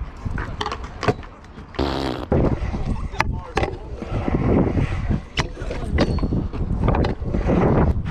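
Stunt scooter wheels rolling on a concrete skatepark with a steady low rumble, broken by several sharp clicks and knocks.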